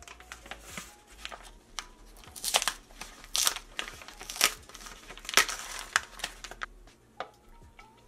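Paper flour bag crinkling and rustling in a series of sharp bursts as its rolled-down top is unrolled and opened, quieter near the end.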